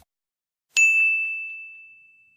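A single bright ding from a notification-bell sound effect, struck about three-quarters of a second in and ringing out on one high tone as it fades.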